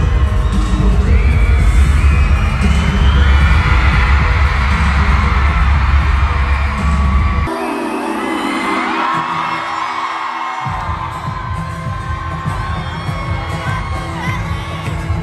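Live pop concert music over an arena PA, with singing and a heavy bass line, recorded from the crowd on a phone. The bass drops out about halfway and comes back about three seconds later.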